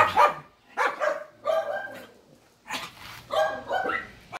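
A small dog barking: a string of short barks with brief pauses between them.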